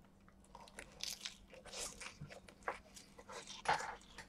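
A man chewing a mouthful of shredded raw leafy greens, with irregular wet crunches, the loudest near the end.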